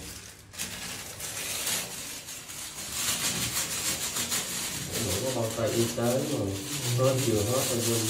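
Water running with a steady hiss, with a voice over it in the second half.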